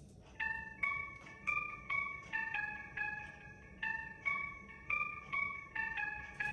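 Bell-like keys melody from a beat project, played clean without distortion: a run of short, high, chime-like notes, about two to three a second.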